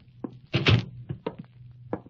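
Radio-drama sound effect of a door closing with a thunk about half a second in, followed by a few short, lighter taps.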